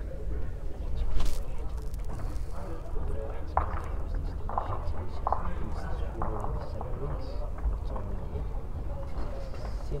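Indoor bowls hall ambience: a steady low rumble of the hall with faint, indistinct voices in the background, and a single sharp knock about a second in.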